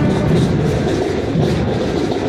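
Parade marching band playing, its drums beating under a dense, steady din.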